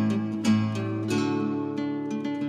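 Instrumental music of plucked acoustic guitar, single notes and chords ringing on, over a steady held bass note.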